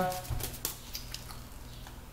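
A few light crinkles of aluminium foil being pressed around the rim of a baking dish, with a soft thump about a third of a second in, then only a faint low steady hum.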